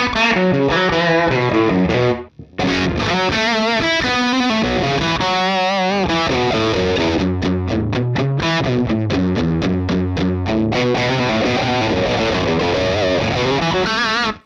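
Electric guitar played through the UAD Ruby '63 Top Boost amp plugin, a model of a Vox-style top-boost amp, with a crunchy, overdriven tone and a thick low end. It plays a lead line with string bends and vibrato, and breaks off briefly about two seconds in.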